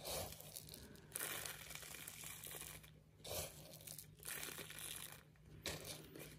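Faint crinkling of a thin PVA bag and rustle of small fishing pellets as they are scooped into it, in several short spells.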